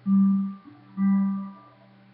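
Two low held notes from a musical instrument, one at the start and one about a second later, each lasting about half a second before fading, closing an instrumental ending.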